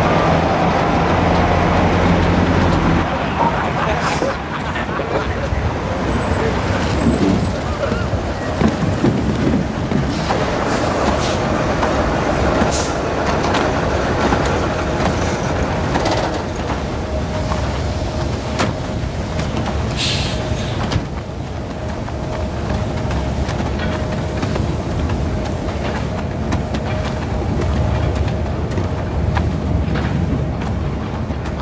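Heavy vehicles and machinery running in a coal-mine yard, a continuous industrial rumble. A steady low engine hum opens it, a steady whine runs through the middle, and a few sharp knocks and clanks stand out.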